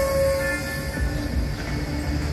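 Wooden flute holding a long note that ends about half a second in, over a recorded backing track of sustained chords and a low steady beat played through a portable speaker.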